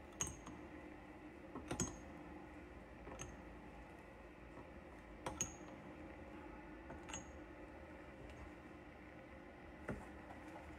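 Small scrap brass pieces clinking as they are dropped one by one into the furnace's crucible: about five light metallic clinks a second or two apart, over a steady low hum.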